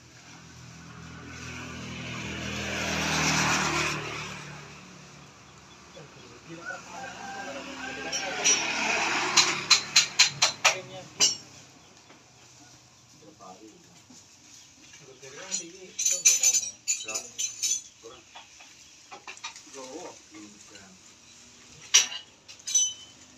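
A motor vehicle passes on the road, its engine hum and tyre noise rising and then fading over the first four seconds. Later come clusters of sharp clacks and knocks, a quick run of about a dozen around ten seconds in and another group around sixteen seconds, with faint voices between.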